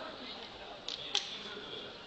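Faint room noise with two sharp clicks about a quarter second apart, a second in.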